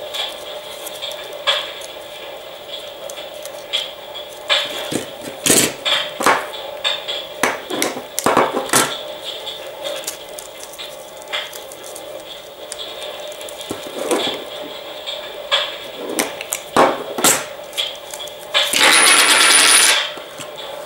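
Cardboard coin holders being opened by hand: paper rustling with scattered small clicks and scrapes, and a louder rustle of about a second near the end.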